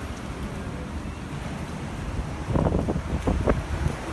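Low outdoor rumble with wind buffeting the phone's microphone. A cluster of short knocks comes about two and a half seconds in and lasts about a second.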